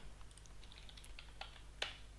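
A few faint computer keyboard keystrokes, the clearest one near the end.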